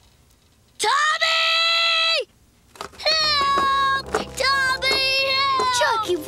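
A cartoon toddler's voice screaming: one loud held cry of about a second and a half, then after a short pause a long wailing call that wavers in pitch.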